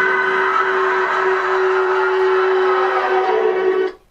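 A single long note from the sketch's closing audio, held at one steady pitch for nearly four seconds and cutting off suddenly near the end.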